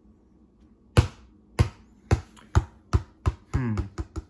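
A size-five Select Numero 10 football dropped onto a wooden floor, bouncing with sharp knocks that come quicker and quieter as it settles. The first bounce, about a second in, is the loudest.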